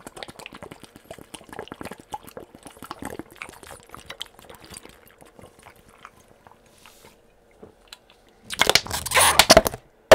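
A man gulping down water from a plastic bottle, with a run of small swallowing and lip clicks, then a few seconds of quiet. Near the end, loud crinkling of the plastic bottle handled close to the microphone.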